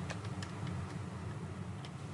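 Faint ticking over quiet room tone.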